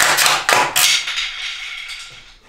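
A screwdriver prying a running light off a steel boat trailer frame: a sharp crack as it comes loose, then a couple more knocks, with metallic ringing that fades out over about two seconds.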